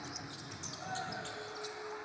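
A basketball bouncing on a hardwood court as a player dribbles, with the faint background noise of an indoor arena.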